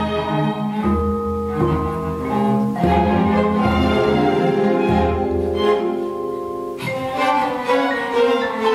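Chamber string orchestra of violins, cellos and double bass playing an instrumental passage: sustained bowed chords over a low bass line of repeated notes, with a sharp accent a little before the end.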